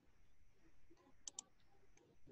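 Near-silent room tone broken by two quick, sharp clicks close together about a second and a quarter in.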